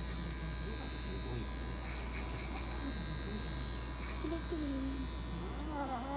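Small electric pet clipper buzzing steadily as it shaves matted fur from a cat's coat.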